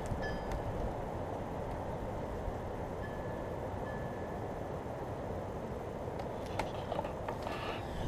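Steady low roaring of lake water heard from a distance, a sound easily mistaken for wind.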